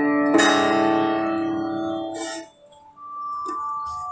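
Sitar played in Hindustani classical style: a plucked note struck about a third of a second in rings out for about two seconds, then dies away into a brief quiet gap, after which a faint high note is held.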